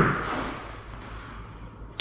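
A short soft bump right at the start that dies away within half a second, then quiet room tone.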